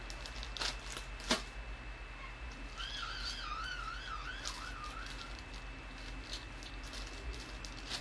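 A couple of light clicks as jewelry is handled, then a warbling, wavering whistle lasting about two and a half seconds.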